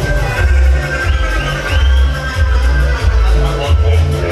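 Loud dance music with a heavy, pulsing bass beat, played over a sonido (mobile party sound system).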